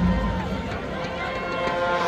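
A lull in a marching band's halftime show in a stadium: a few held band notes fade while spectators nearby talk.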